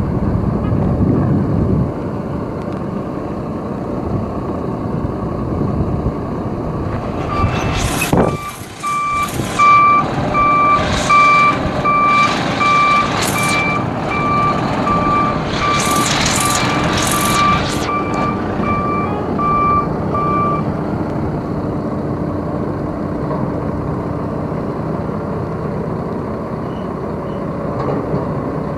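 Ford L8000 dump truck's Cummins 8.3-litre turbo diesel six running steadily. About seven seconds in, its backup alarm starts beeping about once a second and stops after roughly thirteen seconds as the truck reverses. Several short hisses of air come while the alarm sounds.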